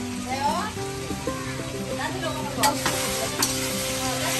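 Food frying in a karai (Bengali wok) on a gas stove, stirred with a metal spatula, with a few sharp scrapes of the spatula against the pan about two and a half and three and a half seconds in. Background music with held notes plays underneath.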